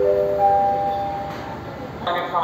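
Electronic announcement chime: a rising run of bell-like notes, the last and highest entering about half a second in, all ringing on and fading away. It is the lead-in to the departure announcement that the train will leave shortly.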